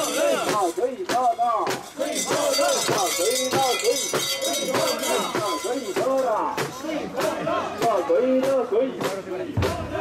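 A group of mikoshi bearers chanting in rhythm as they carry the portable shrine, many voices rising and falling together in short repeated calls, with sharp clicks scattered throughout.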